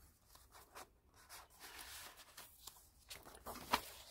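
Faint rustling and light ticks of paper being handled while a page of a handmade paper journal is turned, with one sharper tick near the end.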